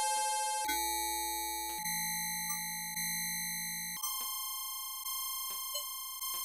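Electronic synthesizer tones: steady, pure sine-like tones, several sounding at once, that switch abruptly to a new set of pitches about every one to two seconds, with short chirping blips scattered over them.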